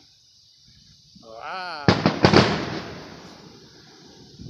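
Two firework bursts about two seconds in, close together, each a sharp bang followed by a rumble that dies away over about a second.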